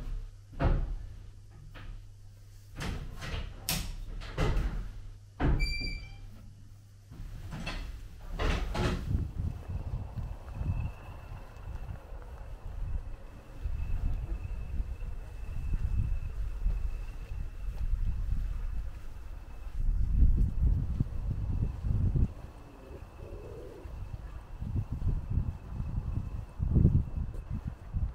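Signal box lever frame being worked by hand: a series of heavy clunks and knocks as the levers are pulled over and their catches drop, with a brief ringing tone about six seconds in. From about ten seconds on, a faint steady high whine sits over irregular low rumbling.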